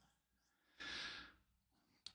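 A man breathes out once, a short sigh of about half a second, about a second in.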